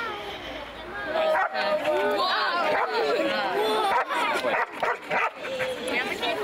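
Border police dog barking and yelping amid the lively chatter of a group of children.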